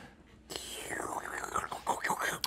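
A brief near-silence, then faint whispering.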